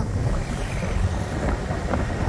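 Wind buffeting the microphone of a moving moped, an uneven low rush with the moped's engine and road noise underneath.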